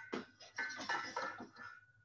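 Stainless steel saucepan clinking and knocking against the cast-iron grate of a gas range as it is lifted off the burner, with a thin ringing tone near the end.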